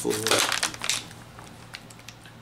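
Thin plastic water bottles crinkling and crackling as they are handled, loudest in the first second and then quieter.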